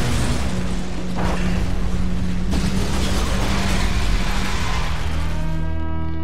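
Dramatic orchestral score over a crash and explosion: a burning craft hits the ground with a noisy blast, followed by further crash bursts in the first few seconds. Near the end a held chord swells in.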